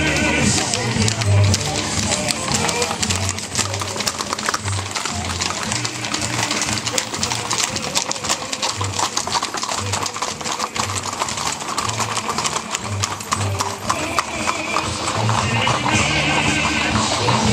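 Many horses' hooves clip-clopping on an asphalt road as a column of mounted lancers rides past, the hoofbeats thickest and loudest in the middle as the horses pass close. Music with a steady low beat plays under the hoofbeats throughout.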